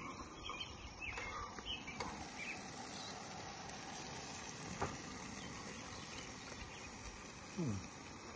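Steady high outdoor hiss, with a few faint chirps in the first two or three seconds and a single soft click about halfway through.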